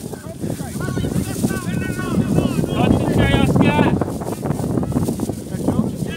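Several distant voices shouting and calling across the pitch, some high-pitched like children's, loudest in the middle, over a steady low rumble.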